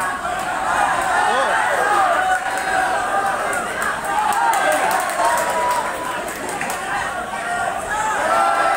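Boxing crowd shouting and calling out, many voices overlapping at once.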